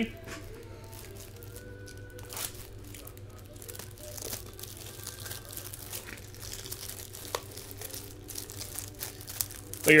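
Faint crinkling and tearing of packaging with scattered light clicks as a sealed case of trading cards is opened, over a steady low hum.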